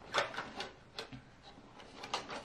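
Hands rummaging in a zippered canvas notions pouch: a handful of short clicks and rustles as small knitting tools inside are moved about, busier in the first second.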